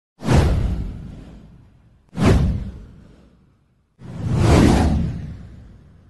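Three whoosh sound effects for a title animation, about two seconds apart. The first two start suddenly and fade out; the third swells in over half a second before fading.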